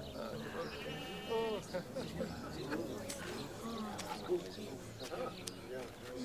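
A single short bleat of a sheep or goat about a second in, over village street ambience of distant, indistinct voices.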